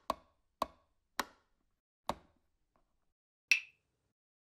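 Short, dry click sound effects of an animated logo, like taps on a wood block, over dead silence: four evenly spread taps, then a brighter click with a brief ring about three and a half seconds in.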